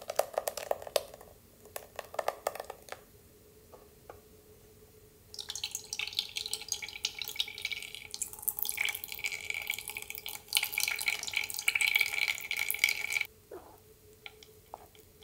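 Thick blended orange pulp pouring from a glass jar into a fine mesh strainer with wet splats. After a short lull, strained orange juice trickles through the mesh and splashes into the juice already in the saucepan for about eight seconds, then stops abruptly.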